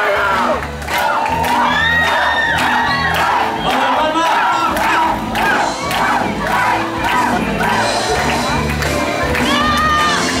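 Crowd shouting and whooping, with repeated high, drawn-out cries, over a karaoke backing track of lively folk dance music with a steady beat.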